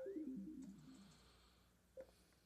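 A short, faint startup chime from the TV's speakers as a Roku streaming stick boots: a quick falling run of notes lasting about a second, then a short blip near the end.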